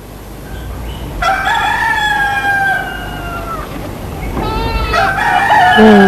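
Rooster crowing twice: one long crow starting about a second in, and a second crow beginning past the middle.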